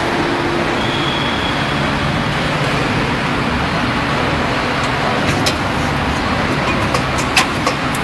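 300-ton hydraulic injection molding machine running with a steady, loud mechanical noise from its hydraulic drive. Several short sharp clicks come in the last three seconds.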